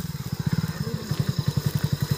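Hero Splendor motorcycle's single-cylinder four-stroke engine idling with an even, steady putter while the bike stands stopped.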